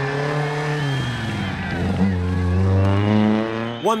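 Classic Ford Escort rally car's engine running hard as it drives along a dirt stage. The note drops about a second in, then climbs again from about two seconds and holds high.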